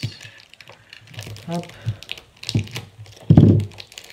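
Small pocket knife cutting and scraping at the plastic shrink wrap on a puzzle cube, with scattered clicks and crinkles of the plastic as it is worked open. A short, loud low sound comes near the end.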